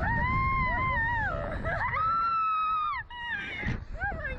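Two long, high screams from riders on a SlingShot reverse-bungee ride, one after the other, the second pitched higher and breaking off about three seconds in. A low rumble of wind on the microphone runs underneath.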